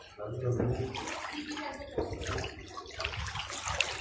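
River water splashing and sloshing as people wade waist-deep and handle a fishing net, with faint voices.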